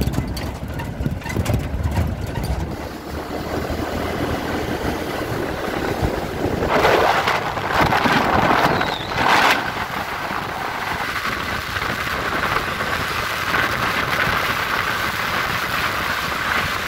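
Wind rushing over the microphone with engine and road noise from a motorcycle riding along a highway, gusting loudest about seven to nine and a half seconds in. A low rumble fills the first couple of seconds.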